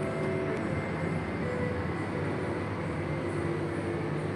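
Steady rushing noise of a large indoor pool hall, with faint notes of background music in it.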